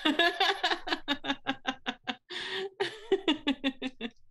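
Laughter: a long run of quick 'ha' pulses, with a breath drawn in about halfway through before the laughing goes on.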